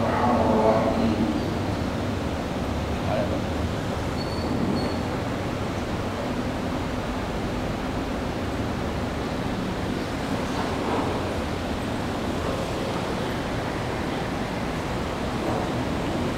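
A voice fades out about a second in, then a steady, even hiss of room noise in a large hall, picked up through the microphone.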